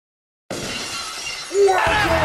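A sudden noisy crash like shattering glass starts about half a second in. About a second later a louder voice with music comes in, the start of the intro audio.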